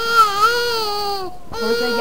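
Infant crying: one long wail of about a second and a quarter with a wavering pitch, a short breath, then the next wail starts near the end.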